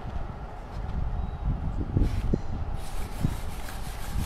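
Soft wet handling sounds of a gloved hand turning a flour-coated burger in a glass dish of egg wash, a few faint strokes over a low steady rumble.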